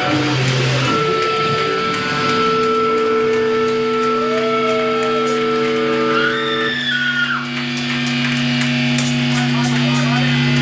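Amplified electric guitar and bass ringing out in a long, steady drone through the amps between songs. Short curving sounds break in twice around the middle.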